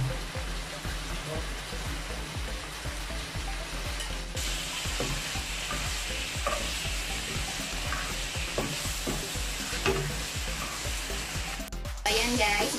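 Beef slices sizzling in a nonstick wok as a spatula stirs them, scraping and tapping against the pan many times. The sizzle gets louder about four seconds in.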